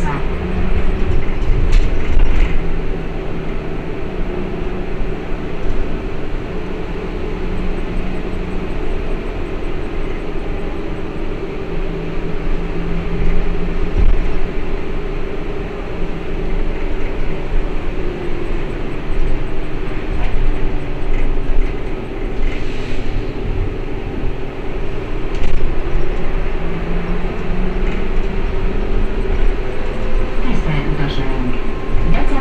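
Inside the cabin of an Ikarus 412 trolleybus under way: a steady electric drive hum with a couple of held tones, over tyre and road rumble, rising and easing a little as the vehicle changes speed.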